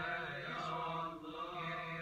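Coptic Orthodox liturgical chanting from a church-service broadcast, heard through a television's speaker: men's voices holding long, drawn-out notes.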